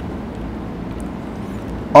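Steady background noise, a low rumble with a hiss over it, in a pause between spoken phrases, with a faint click about halfway through.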